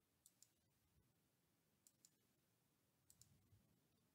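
Three pairs of faint computer mouse clicks, roughly a second and a half apart, over near silence.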